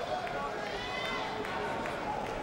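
Boxing arena crowd chatter, with one voice calling out above it about a second in and a few short sharp taps from the ring.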